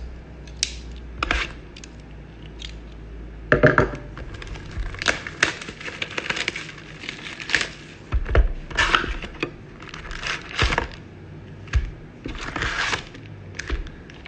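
Sealed trading-card hobby box being unwrapped and opened by hand, and its foil card packs pulled out and stacked: an irregular string of crinkles, scrapes and light taps.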